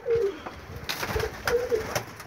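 Domestic pigeons cooing in a loft, several short low coos, with a couple of sharp knocks in between.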